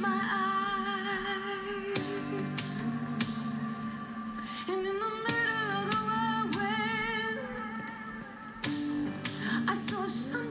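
Slow worship music: a woman sings long held notes that waver in pitch, with no clear words, over a steady guitar accompaniment.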